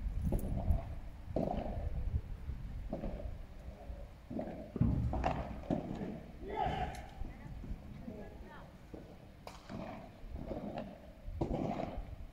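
Padel ball struck by rackets during a rally: a few sharp, hollow pops a couple of seconds apart, over low rumble and indistinct voices.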